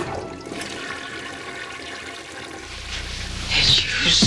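Toilet flushing: a steady rush of water that grows louder near the end.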